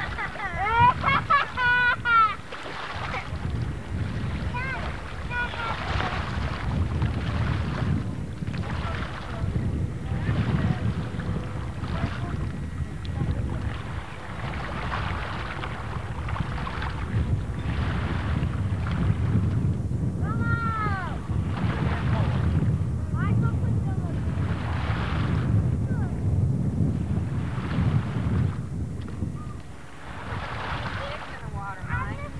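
Wind buffeting the camcorder microphone in a steady low rumble, with people calling out and shouting, loudest in the first two seconds and again about twenty seconds in.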